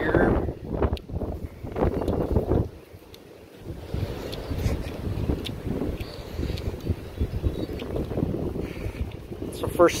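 Wind buffeting the phone's microphone in gusts: a rumbling noise that rises and falls, lulls briefly about three seconds in, then carries on at a steadier level.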